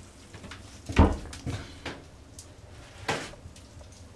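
A heavy thump about a second in, followed by a few lighter knocks and a brief scrape near three seconds in.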